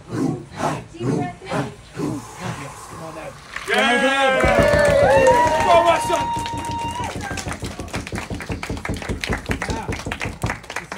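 Short forceful breaths with voice, about two a second, from a man sitting in an ice bath. At about four seconds loud cheering shouts from several people break out, one held as a high note, then a group claps steadily as he climbs out of the icy water.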